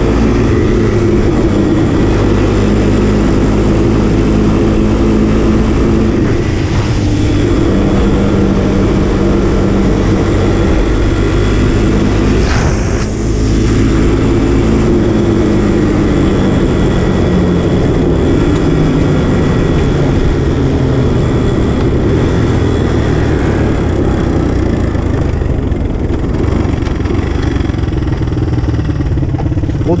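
Honda Big Red ATC 200 three-wheeler's single-cylinder four-stroke engine running under way, its pitch rising and falling with the throttle, with a brief drop about halfway through. The engine is running on vegetable oil in place of motor oil.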